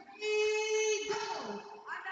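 Voices singing: a high note held for most of a second, then sliding down, with another rising note near the end.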